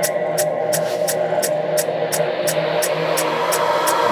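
Electronic music: a sustained synth pad with a short, crisp high tick about three times a second and no kick drum.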